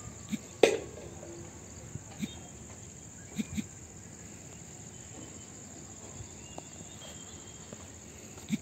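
Insects chirring in a steady high-pitched drone, with a few short knocks, the loudest just under a second in.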